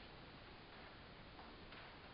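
Near silence: room tone with a steady faint hiss.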